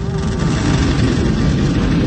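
A loud, steady low rumbling noise with a hiss above it.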